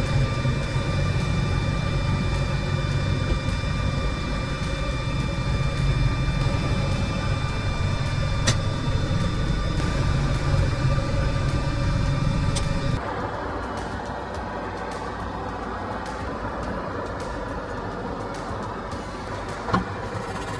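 A steady low hum with background music over it; the hum and its steady high tones drop away about thirteen seconds in, leaving quieter sound.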